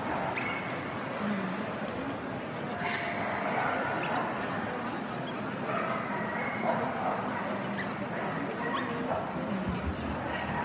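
A dog whimpering and yipping in short high calls scattered through, over the steady chatter of a crowd in a large exhibition hall.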